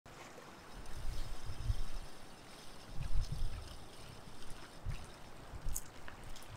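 Small waves lapping and washing against shoreline rocks, with irregular low gusts of wind on the microphone.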